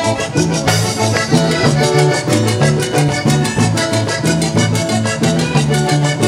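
Live vallenato band playing an instrumental passage of a merengue: button accordion melody over electric bass, electric guitar and percussion, with a steady beat.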